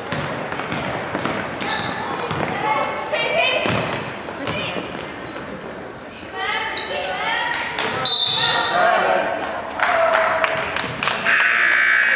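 Live basketball game sounds in an echoing gym: a basketball bouncing on the hardwood court amid sharp knocks and short squeaks of play, with people shouting and calling out throughout.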